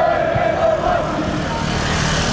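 A motorbike passes close by, its engine and road noise swelling toward the end. Before it, a held, wavering tone sounds for about the first second.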